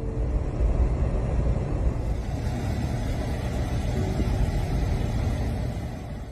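Steady low rumbling noise of a blizzard's wind against a vehicle, heard from inside the car, strongest in the deep bass.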